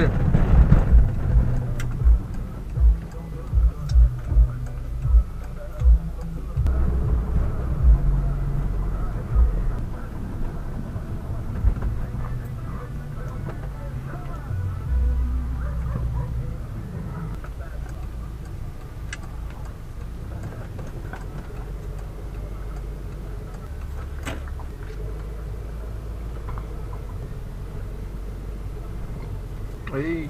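Cabin noise of a car driving over a cobbled street: a low rumble with irregular low thumps through the first ten seconds, then a steadier low drone.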